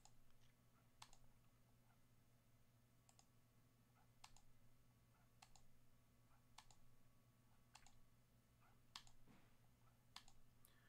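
Faint computer mouse clicks, one about every second, as a button is pressed over and over.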